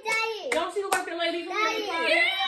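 Excited high voices and laughter, with two sharp hand claps close together about half a second in.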